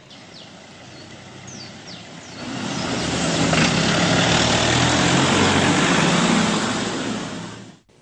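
A vehicle engine running close by: faint bird chirps at first, then about two and a half seconds in the engine noise swells up and runs loud and steady, fading just before the end.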